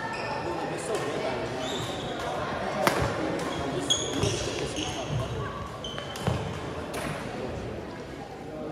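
Badminton rally in a gym: sharp racket strikes on the shuttlecock, the loudest about three seconds in, with short high squeaks of shoes on the hardwood court, all echoing in the large hall.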